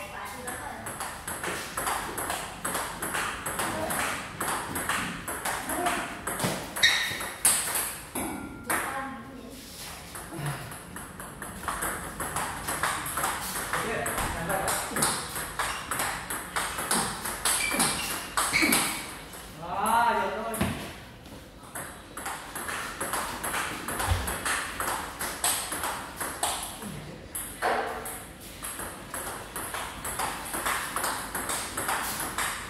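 Table tennis rallying: the celluloid-type ball clicking in quick succession off rubber paddles and the table tops, with overlapping rallies and people talking.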